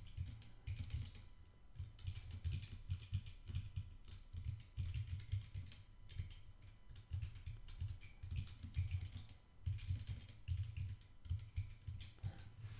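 Typing on a computer keyboard: bursts of rapid keystrokes with short pauses between them.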